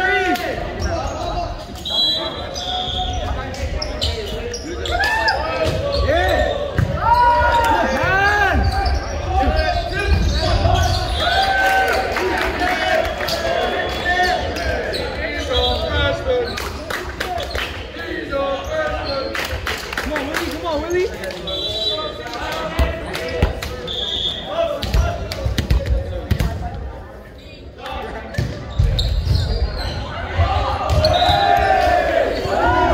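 Echoing gymnasium sound with voices calling out and chattering, and repeated thumps of volleyballs hitting and bouncing on the hardwood floor.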